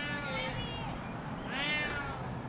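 A cat meowing twice, faint and from high up in the tree, each meow a drawn-out arching call; the second comes near the end.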